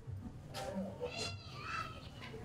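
An animal calling twice in short, high-pitched cries: one about half a second in and a shorter one near the end.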